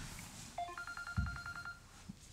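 A mobile phone ringtone starts about half a second in: a short electronic tone that steps up in pitch, then a fast, evenly pulsing beep at one pitch. A dull thump sounds about a second in.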